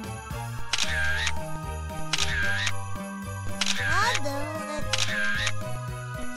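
Cartoon camera shutter sound effect clicking four times, over light background music.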